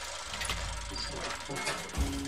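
Sound effect of metal gears turning with ratchet clicks, like a heavy vault-door mechanism, laid over an animated title.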